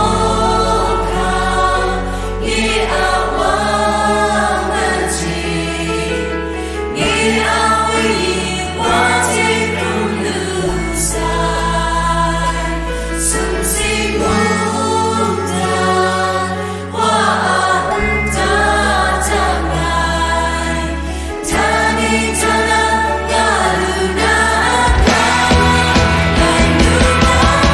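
Kachin Christian worship song: a choir singing over a band backing, with held bass notes that change every few seconds.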